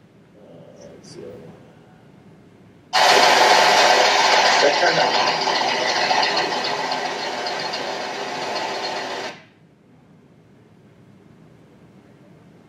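Kwik Kleen rotary grain cleaner and its augers running with oats pouring through, screening foxtail seed out before the grain goes into the bin. It is played back over a hall's speakers, starts suddenly about three seconds in and cuts off about six seconds later.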